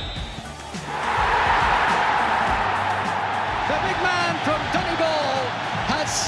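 Stadium crowd breaking into a loud, sustained cheer about a second in, as the goalkeeper saves a penalty in the shootout. An excited voice rises over the roar later on.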